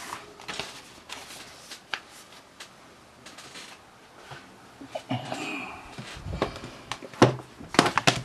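Paper and book handling on a desk: scattered rustles and light taps as a magazine is slid away, then a couple of louder knocks near the end as a softcover colouring book is laid down.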